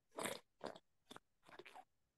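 Faint mouth noises from a man pausing between sentences: a short breath about a fifth of a second in, then a few soft lip and tongue clicks.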